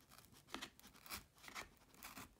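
A few faint scraping strokes of a serrated kitchen knife sawing at the edge of a cardboard mailer.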